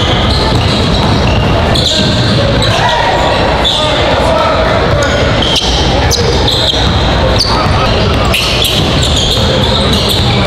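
Live basketball game sound in a large gym: a ball bouncing on the hardwood as it is dribbled, sneakers squeaking, and steady crowd chatter ringing around the hall.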